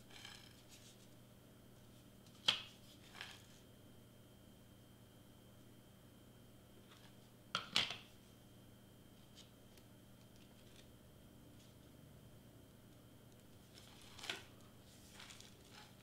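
Quiet room with a faint steady hum, broken by a few short clicks and rustles of a cardstock-wrapped Pringles can and a hot glue gun being handled on a cutting mat. The loudest clicks come about two and a half seconds in and just before eight seconds in.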